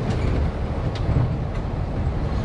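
A 1971 Ford Bronco driving on the road, heard from inside its cab: a steady low engine and road rumble, with one faint click about a second in.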